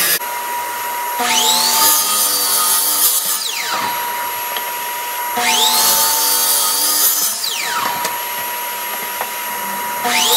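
Hitachi miter saw motor started twice: each time it whines up to speed, the blade cuts through a board, and the motor winds down with a falling whine. A third start comes at the very end. A steady high hum runs underneath throughout.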